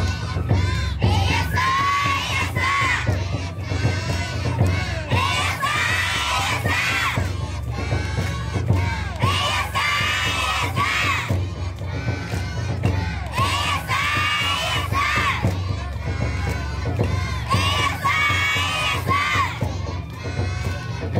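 Many young children's voices shouting calls together over festival music, with the calls coming in repeated clusters every second or so.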